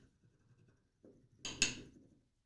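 Solid sumi ink stick rubbed against a wet glass dish, grinding it into ink: quiet at first, then a short scraping stroke or two about a second and a half in.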